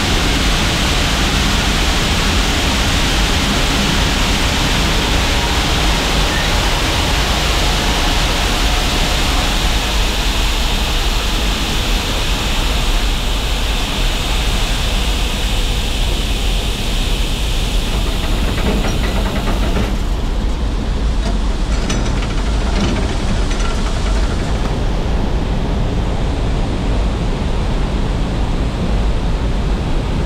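Shelled corn pouring from a grain trailer's hopper gate onto a steel grate over a receiving pit: a steady rushing hiss over a low rumble. About two-thirds of the way through, the hiss thins out, leaving the rumble and a few faint ticks.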